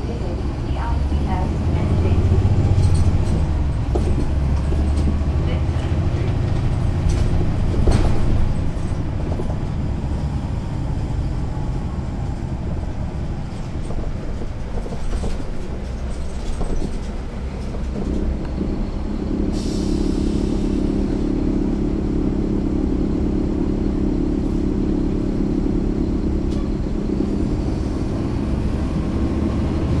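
Caterpillar C13 ACERT diesel engine of a 2009 NABI 40-SFW transit bus running, heard from the back seat inside the bus. The engine note shifts about eighteen seconds in, and a short burst of hiss follows.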